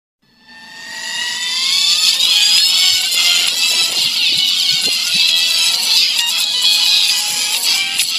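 Cartoon opening theme music that fades in over the first two seconds, with a rising glide near the start, then plays on at full level.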